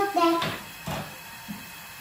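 A woman's voice for the first half second, then two short knocks about half a second apart as kitchen work goes on, and a quiet stretch after them.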